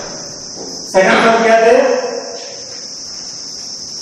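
A steady high-pitched hiss or drone runs unbroken throughout. A man's voice speaks briefly about a second in, for about a second.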